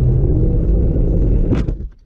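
Steady low road rumble heard from inside a car. About one and a half seconds in comes a single sharp crash as a mass of snow and ice thrown off an overpass strikes the windshield and shatters it.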